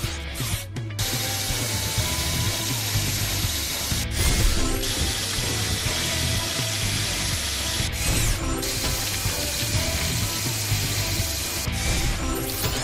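Video-game rock-drill sound effect: a cartoon drill grinding and rattling into rubble, with short breaks about four and about eight seconds in, over background music.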